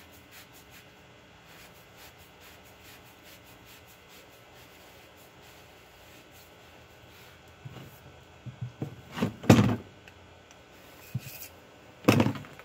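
Faint rubbing as a length of 1-inch PVC pipe is worked through a rockwool cube to core out its centre, then a cluster of knocks and thuds from handling the pipe and tools against a plastic tray, the loudest about two-thirds of the way in.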